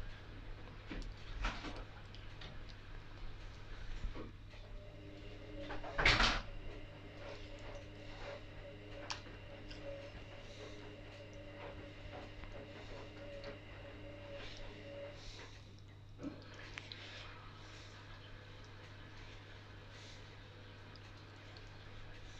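Faint wet squelches and light clicks of sea bass fillets being turned by hand in a gram-flour batter in a glass bowl, with one louder thump about six seconds in. A steady low hum runs underneath, and a faint steady humming tone comes in from about four to fifteen seconds in.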